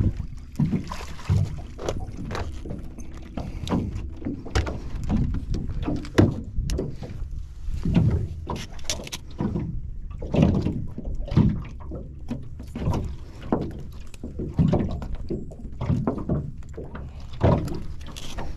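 Water slapping against a small fibreglass boat's hull, with irregular knocks and handling noises from a landing net and a rockfish being worked on the deck as it is unhooked.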